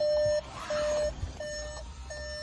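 Warning chime from a 2017 Volkswagen Golf's instrument cluster: a steady single-pitched beep repeating about every 0.7 s, three beeps in all.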